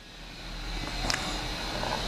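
A low background noise swelling slowly in level, like a vehicle passing outside, with a faint steady high whine and a single click about a second in.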